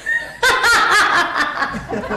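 A woman laughing mockingly, breaking into a loud snickering laugh about half a second in.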